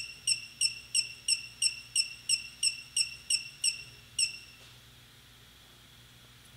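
Electronic beeping during a gimbal controller's accelerometer calibration step: short high beeps at about three a second for some four seconds, the last one a little longer.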